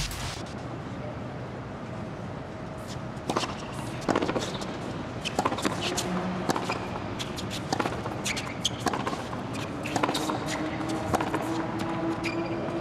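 Tennis rally on a hard court: the ball is struck by rackets and bounces, giving sharp pops every half second to a second over steady background noise.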